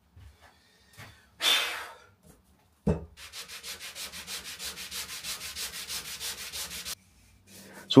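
Hand rubbing back and forth over the beech mallet's wood, about five even strokes a second for some four seconds. Before it come a short hiss about a second and a half in and a knock just before the strokes begin.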